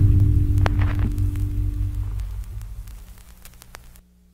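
The closing chord of a blues-rock band's song ringing out and fading away, low sustained notes dying down steadily over a few seconds, with a few faint scattered clicks and crackle.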